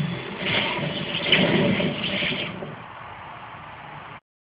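A noisy sound effect from a low-fidelity production-logo soundtrack, swelling about half a second in and dropping back after about two and a half seconds.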